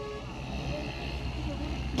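Low, steady rumble of road traffic on a street.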